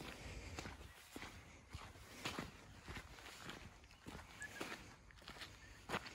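Footsteps walking on sandy red dirt, about two steps a second.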